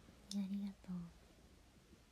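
A brief, soft murmured utterance by a woman: a short hiss followed by two quick hummed syllables in the first second, then quiet room tone.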